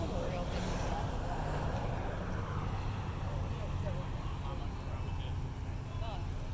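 Outdoor roadside ambience: a vehicle passes on the road, rising and fading over the first few seconds, over a steady low rumble and the distant chatter of people.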